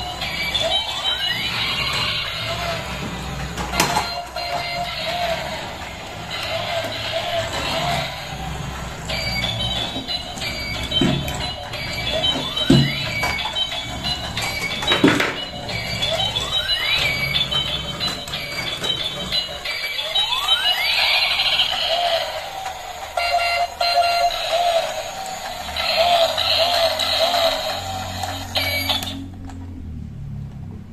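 Battery-powered bump-and-go toy car with see-through gears playing its tinny electronic tune, repeating with several rising siren-like sweeps. The tune cuts off suddenly about a second before the end.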